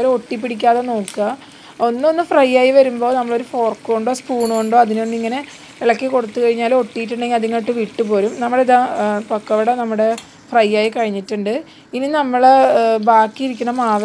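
A voice talking almost without pause, over the sizzle of pakoda deep-frying in oil.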